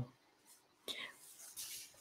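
Mostly quiet room with faint, soft whispered voice sounds about a second in and again shortly after.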